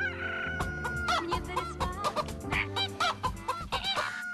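Rapid clucking and crowing of a chicken, in many short calls, over steady background music.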